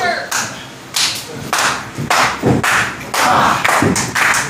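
Sharp hand claps, about one every half second, with two heavier dull thumps in the wrestling ring, the second near the end.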